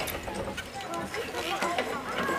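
Background chatter of young people's voices, with scattered light clicks.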